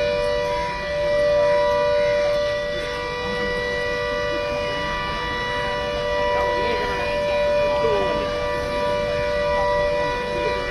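Warning siren sounding one steady, unwavering tone, a blast warning for the controlled implosion of the apartment towers. Faint voices can be heard beneath it.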